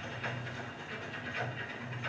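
Soundtrack of a projected film heard through a hall's loudspeakers: a hissy ambience over a steady low hum, with faint brief sounds and no clear speech.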